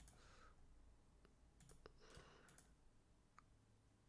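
Near silence: room tone with a few faint, scattered computer mouse clicks.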